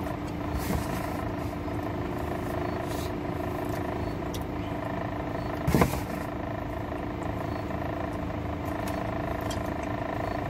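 Steady in-cabin hum of a car idling, with faint clicks of chewing. About six seconds in there is one short, louder voiced sound.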